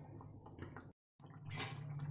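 Gravy simmering quietly in a kadhai, a faint bubbling and dripping. It is broken by a moment of dead silence about a second in, then resumes slightly louder with a low steady hum.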